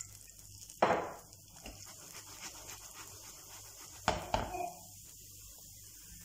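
Kitchenware knocking: one sharp knock about a second in and a couple more at about four seconds, with faint background between.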